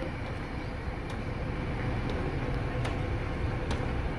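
Stainless-steel Southern Aurora passenger train moving away: a steady low rumble with a few faint, sparse clicks.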